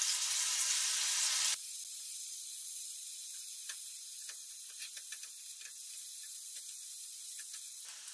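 Shrimp sizzling in butter and lemon sauce in a stainless steel frying pan: a steady high hiss that drops suddenly to a softer level about a second and a half in. A few faint clicks follow as tongs turn the shrimp against the pan.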